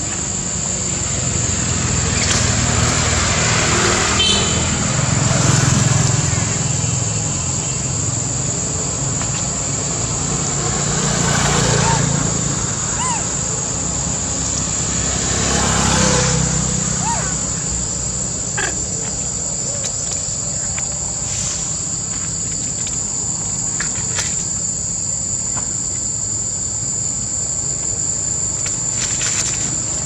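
A steady, high-pitched drone of insects, with the low rumble of passing vehicles swelling and fading about three times.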